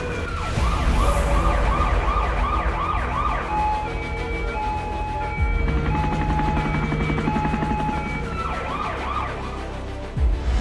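Emergency-vehicle siren over a low rumble: fast rising-and-falling yelp cycles, about three a second, then from about three and a half seconds in a two-tone hi-lo alternation. It returns briefly to the yelp near the end.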